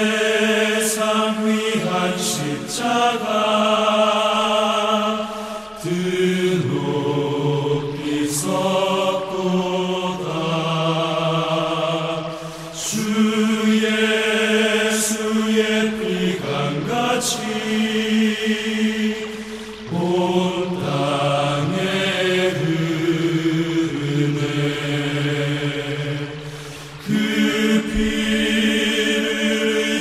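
Voices singing a slow Korean praise-and-worship song in long, held phrases, with a short break for breath about every six to seven seconds.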